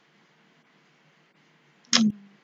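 A single short, sharp burst of breath with a brief voiced tail from a person at the microphone, near the end; otherwise faint room tone.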